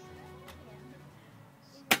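A single sharp chop near the end as a sword blade cuts through a pumpkin, under faint talk.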